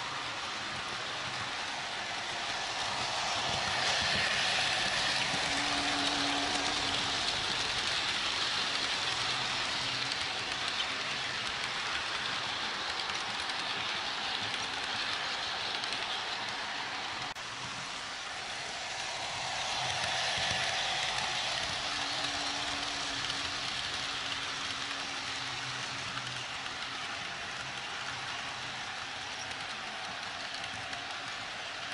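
HO-scale model train running around a looped track, its wheels and motor giving a steady rolling hiss. The hiss swells twice as the train passes close, about sixteen seconds apart.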